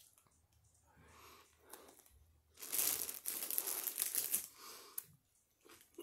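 A bite of a deli sub on a French roll being torn off and chewed close to the microphone: quiet at first, then about two seconds of crackly crunching and tearing, with a sharp click about five seconds in.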